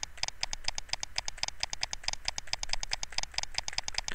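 Rapid, even tapping and clicking, about ten a second, as short quick brush strokes are painted on the computer.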